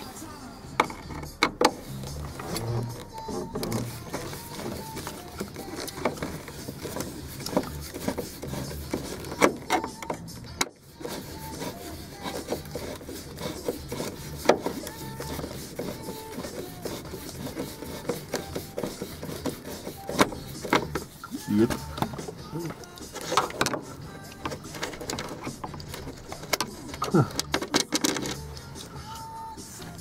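Scattered clicks, scrapes and knocks of a screwdriver working a screw out of a Corvair's metal dash, over music playing in the background.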